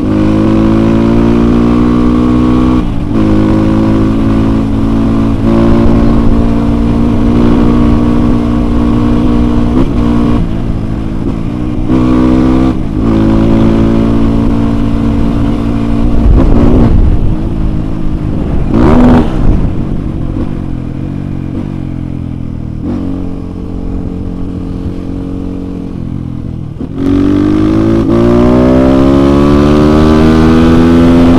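Kawasaki KLX 150 single-cylinder four-stroke engine, tuned without a bore-up and fitted with an aftermarket exhaust, pulling hard under acceleration. Its pitch climbs and drops back at each gear change. It eases off for a few seconds past the middle, then revs up hard again near the end, with wind rumble on the microphone.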